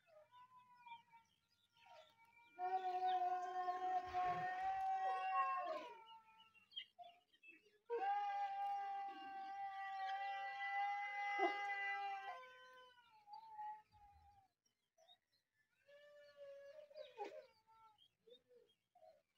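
Two long drawn-out animal cries, each held at a steady pitch for about four seconds, with short faint calls between and after them.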